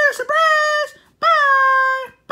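A child's high voice wailing in long held, wordless notes, two in a row, each starting with a quick upward slide and then holding steady.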